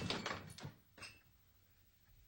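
A loud crashing noise dies away, followed by a couple of sharp knocks and a short thud about a second in.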